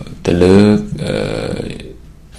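A man's voice: a low vowel held for about half a second, like a drawn-out hesitation sound, then quieter talk that fades near the end.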